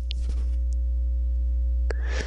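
Steady low electrical hum with fainter steady higher tones, picked up by the recording microphone, with a few faint clicks.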